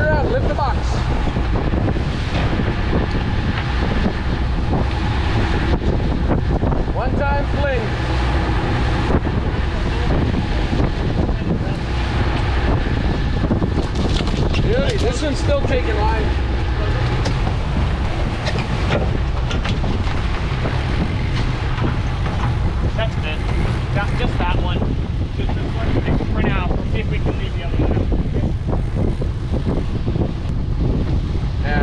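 Sportfishing boat's engine running steadily under way, with wind on the microphone, and men's voices calling out over it now and then.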